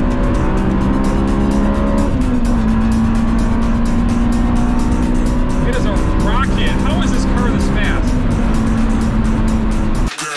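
Honda S2000's 2.0-litre F20C four-cylinder droning steadily at cruise, heard inside the cabin over road noise. Its pitch dips slightly about two seconds in.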